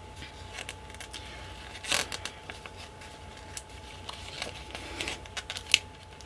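Vinyl sticker sheet being handled and flexed while a small sticker is peeled off with tweezers: soft crackles and ticks, one louder crackle about two seconds in and several quick ones near the end.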